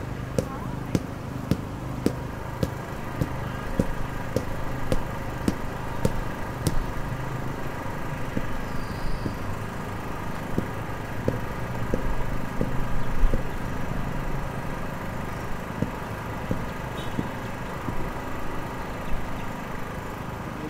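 City street road works: a steady hum of engines and machinery with a sharp regular knocking about twice a second, clearest in the first seven seconds. A louder swell of machinery noise comes about twelve seconds in.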